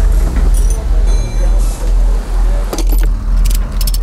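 Metal clinking and jingling, like loose hardware and tools, with a cluster of sharp clicks about three seconds in, laid over a deep bass pulse that beats about twice a second.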